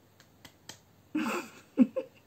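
A woman's short breathy laugh, starting about a second in with its loudest voiced burst near the end. It comes after three small clicks.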